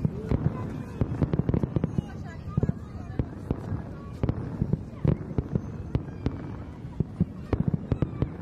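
Aerial fireworks display going off: a rapid, irregular string of bangs and crackles, densest in the first two seconds, with further clusters about five seconds in and near the end.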